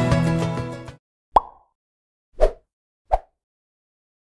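Background music fading out in the first second, then three short pop-like sound effects from a logo animation, about a second apart, the last two closer together.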